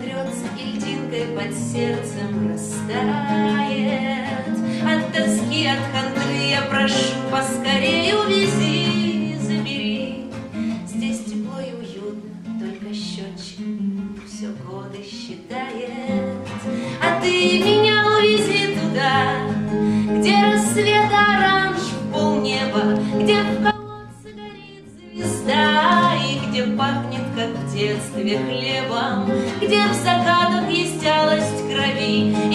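A woman singing a bard song, accompanying herself on a nylon-string classical guitar with a capo. The singing and guitar go on throughout, with a short lull of about a second and a half a little after two-thirds of the way through.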